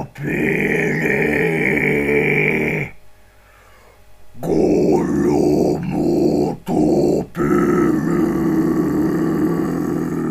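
Guttural growled extreme-metal vocals without instruments underneath: long held growls of about three seconds each, broken by a near-silent pause about three seconds in and two short breaks around the seventh second.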